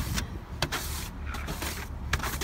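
Snow being swept off a car's glass: a noisy brushing and scraping with a few sharp clicks, over a low rumble.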